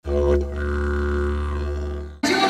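A didgeridoo drone used as a title sting: one steady low note held for about two seconds, dying away at the end.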